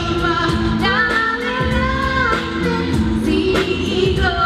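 A woman singing into a microphone over a pop backing track with a steady beat and bass, holding and gliding long notes; a young girl sings along into her own microphone.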